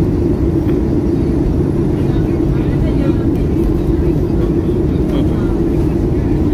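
Steady jet-airliner cabin noise in flight, heard inside the cabin by the wing: an even rush of engine and air noise with a strong low hum. Faint voices come through now and then.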